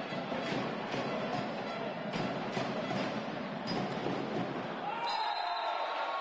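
Volleyball rally in a sports hall: the ball is struck several times, sharp hits over steady crowd noise. Near the end, as the rally ends, crowd voices swell and a high steady tone sounds.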